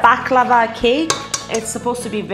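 Eggs cracked against the rim of a stainless steel mixing bowl, giving sharp metallic clinks, one right at the start and another about a second in. Background music with a singing voice plays underneath.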